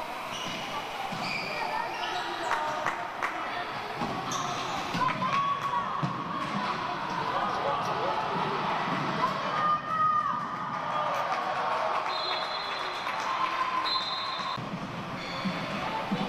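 A handball bouncing repeatedly on a wooden sports-hall floor during play, with shouting voices echoing in the hall.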